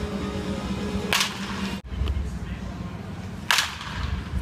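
Baseball bat striking pitched balls in a batting cage: two sharp cracks of contact, about two and a half seconds apart.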